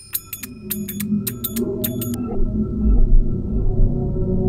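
Background film score: sharp, ringing percussion strikes for the first two seconds give way to a low, sustained droning tone that swells louder.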